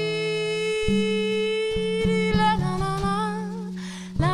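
A woman's voice humming one long, wordless held note that turns wavering in the second half, over low plucked upright double bass notes. The music grows quieter near the end.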